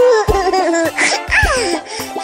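Cartoon children's voices laughing, their pitch sliding up and down, over the backing music of a children's song with a steady beat.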